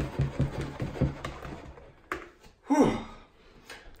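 A whisk stirring waffle batter in a bowl: quick scraping and tapping strokes for about the first second and a half, then a couple of short knocks and a brief voice sound near the three-second mark.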